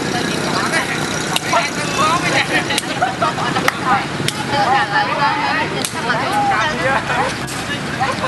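A hacky sack being kicked back and forth, a sharp tap every second or so, over the steady noise of passing road traffic and men's voices.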